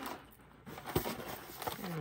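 Plastic-packaged sticker sheets being handled, with one sharp knock about halfway through.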